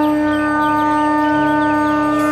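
One long blown horn note, held steady at a single pitch with a rich, buzzy set of overtones.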